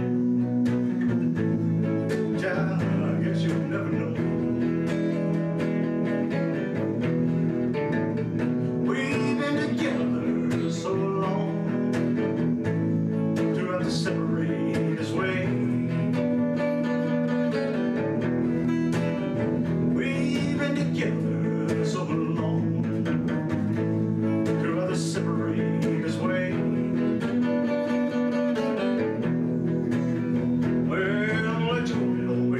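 Man singing while playing chords on a hollow-body electric guitar, the music running without a break.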